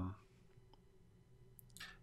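A faint single computer-mouse click, followed near the end by a short intake of breath.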